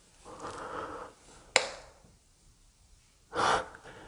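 A person breathing close to the microphone: a breathy exhale, then a single sharp click about a second and a half in, then a short, loud gasp near the end.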